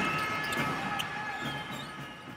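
Basketballs bouncing on a gym floor at irregular intervals, with sneaker squeaks, fading out near the end.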